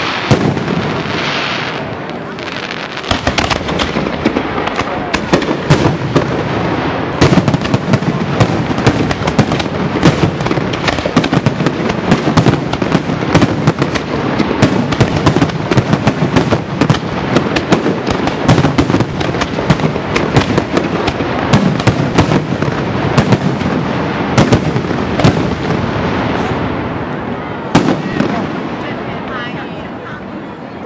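Aerial firework shells bursting in rapid, overlapping bangs, one after another throughout, thinning out and growing quieter near the end.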